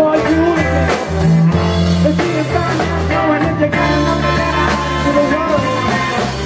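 Live rock band playing: electric guitar, bass guitar and drum kit, with singing over the top.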